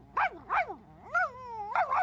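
Cartoon dog giving two short yelps, then a longer wavering whine that falls in pitch near the end.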